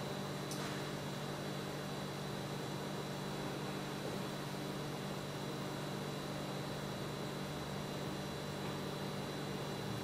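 Steady background hum and hiss with a thin, faint high whine, and no distinct events apart from a faint click about half a second in.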